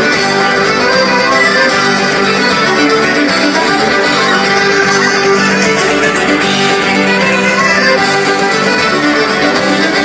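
A live band with guitars playing loud, continuous music on stage, heard from within the crowd.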